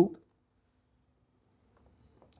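A few faint computer keyboard keystrokes as text is typed: one at the start and a couple near the end, with a quiet gap between.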